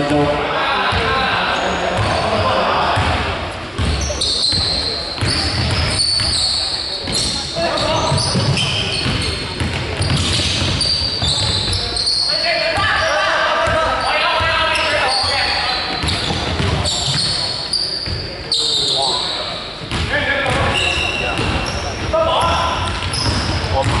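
A basketball being dribbled on a hardwood sports-hall floor during a game, with sneakers squeaking briefly and often on the court. Players' voices echo in the hall.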